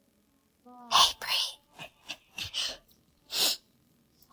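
A person whispering in short, breathy bursts that start about a second in, after a near-silent moment.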